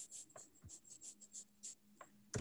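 Near silence with faint, quick clicks, about five a second, typical of typing on a computer keyboard, over a faint low hum.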